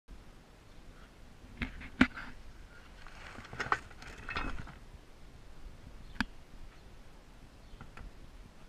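A small hermetic refrigeration compressor being handled and lifted out of a cardboard box: a few sharp knocks and clinks, the loudest about two seconds in, with cardboard rustling and scraping in the middle.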